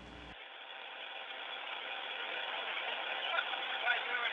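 Steady whirring hum of the space station's cabin fans and equipment, heard through thin, narrow-band downlink audio and slowly getting louder.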